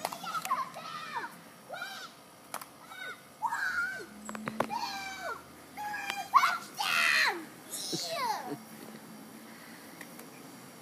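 A young child's voice: short wordless calls, squeals and laughs in bursts, some high-pitched, loudest in a run of squeals about two-thirds of the way through.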